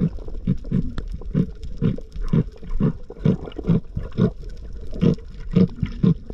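Underwater, heard through an action camera's waterproof housing: a steady run of low thuds, a little more than two a second, over a low rumble of moving water.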